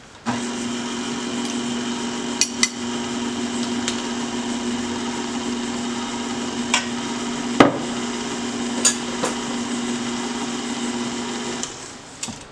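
KitchenAid Ultra Power stand mixer's motor running steadily as its flat beater mixes bath-bomb dry ingredients while the wet ingredients are poured in, switched on just after the start and off near the end. A few knocks and clinks ring out over the hum, the loudest a little past halfway.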